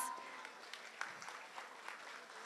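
Faint, scattered audience applause, a soft haze of claps with a few separate claps standing out.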